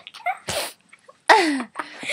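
A young girl's sneeze: a short breathy burst, then a loud explosive one about a second later that trails off into a voiced cry falling in pitch.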